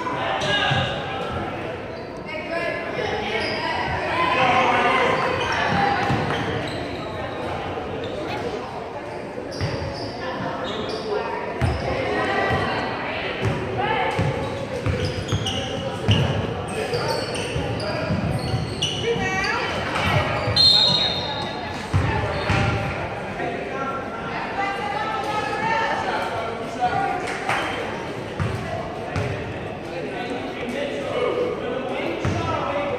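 Gym sound of a youth basketball game: a basketball bouncing on the hardwood court amid the chatter and calls of players and spectators, all echoing in the large hall.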